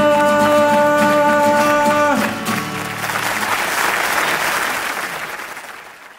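A live folk song ends on a long held final note that stops about two seconds in, followed by audience applause that swells and then fades out.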